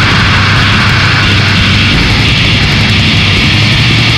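Noisecore band recording: a loud, dense wall of distorted noise with a steady low drone underneath and no clear beat.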